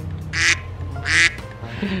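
Two short raspy duck quacks, the first about a third of a second in and the second about a second in, over steady background music.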